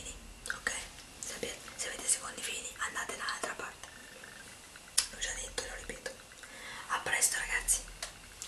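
A woman whispering close to the microphone, in short breathy phrases.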